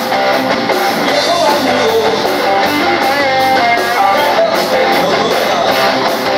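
A live rock band playing: strummed acoustic guitar and other instruments over drums, with a steady cymbal beat at a constant, loud level.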